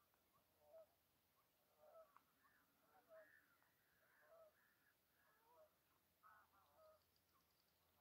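Great snipes displaying at a lek: faint, short runs of chirping notes and clicks, coming one after another every half second to a second.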